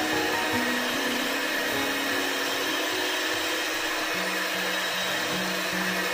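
Electric hand mixer running steadily at medium speed, its beaters whisking thin cake batter, with background music over it.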